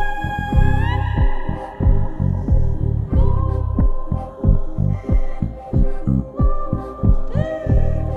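Background electronic music: a deep, throbbing pulse under sustained synth tones that slide up in pitch to a new note several times.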